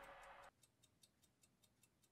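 Wall clock ticking faintly in quick, even ticks, about six a second, as the music before it fades out.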